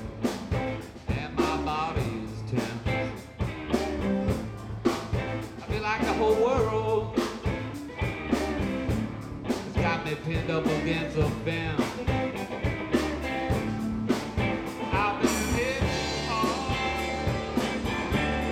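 Blues band playing live: electric guitars over electric bass and a steady drum beat.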